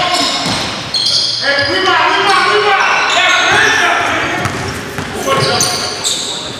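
Live basketball game sound on a gym floor: sneakers squeaking in short high squeals on the hardwood, the ball bouncing, and players calling out.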